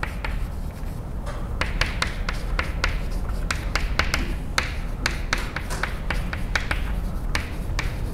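Chalk writing on a blackboard: a quick, irregular run of sharp taps and short scratches, several a second, as letters are written.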